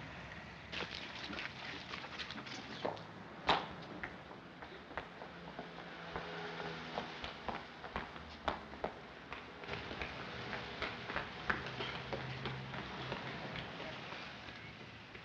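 Running footsteps on a paved street: irregular, sharp steps that go on throughout.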